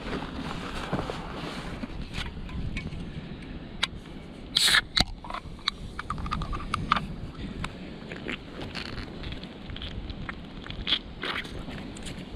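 Rustling and scraping as a backpack is rummaged through on dry leaf litter. About four and a half seconds in, a ring-pull drink can is cracked open with a short hiss, followed by small clicks and handling noises.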